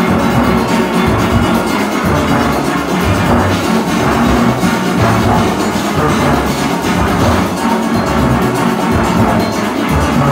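A nine-bass steelpan set played close up, its deep notes changing quickly over the full steel orchestra playing together.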